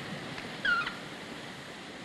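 A single short, high-pitched animal call, wavering and falling slightly, a little over half a second in, over a faint steady background hiss.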